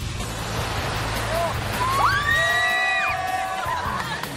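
Breaking surf rushing under background music. About halfway in, several voices whoop in long cries, each sliding up in pitch and then holding for a second or so.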